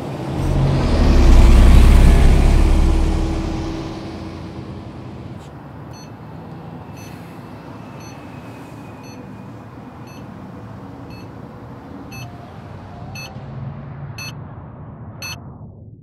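Street traffic: a vehicle passes with a low rumble that swells and fades over the first four seconds. Then a steady traffic hum continues, with a short high beep about once a second.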